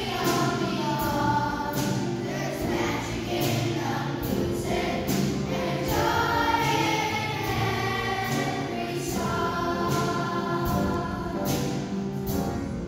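Children's choir singing a song together, the sung phrases running on without a break.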